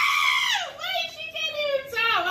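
A woman laughing in a long, high-pitched squeal that falls in pitch about half a second in, then breaks into shorter wavering laughs.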